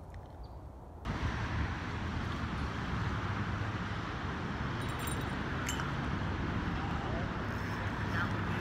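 After a quiet first second, a steady rush of flowing river water mixed with road traffic crossing the bridge, with a couple of light clinks near the middle.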